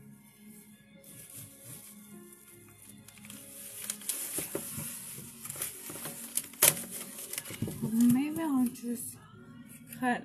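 Plastic bag crinkling and rustling as a block of tofu is taken from it, over quiet background music. A sharp click comes a little after the middle, and a brief voice sound near the end.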